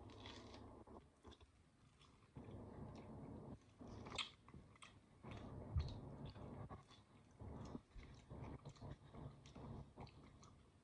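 Faint, irregular tearing and small snaps of orange rind being pulled off by hand, a tight-skinned orange that is hard to peel.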